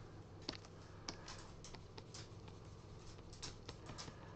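Faint computer keyboard keys clicking, about ten irregular presses spread over a few seconds, over a steady low hum.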